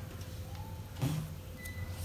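Faint rustling and creasing of a sheet of origami paper being folded by hand, a few soft crinkles over a steady low hum. A brief murmur of voice about a second in.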